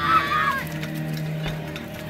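A high-pitched voice calling out briefly at the start, then steady background music.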